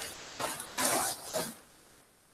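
Plastic bags rustling in a few short bursts as a hand rummages through them. The sound cuts off suddenly about a second and a half in.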